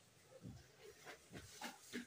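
Near silence with a few faint, short rustles and soft knocks of cloth as a school blazer is pulled on.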